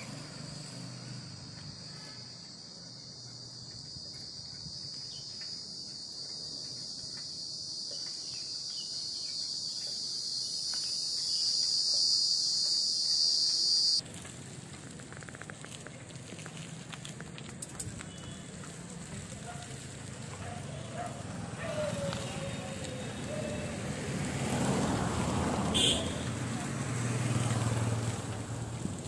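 A steady, high-pitched insect drone that grows louder and then cuts off suddenly about halfway through. After it comes mixed outdoor noise with a faint voice.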